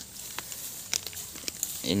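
Faint rustling and crackling of grass and undergrowth, with a few soft clicks.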